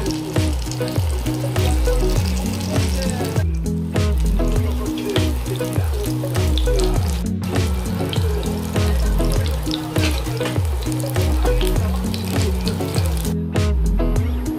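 Background music with a steady beat over the sizzle of thin-sliced pork belly and king oyster mushrooms frying in a pan. The sizzle drops out briefly twice and fades shortly before the end.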